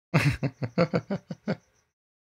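A man laughing: a breathy burst, then about seven short chuckles in quick succession that fade out about a second and a half in.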